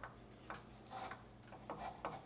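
Faint, coarse rustling of black deer hair being handled at the fly-tying bench: a few brief soft scrapes, about one every half second.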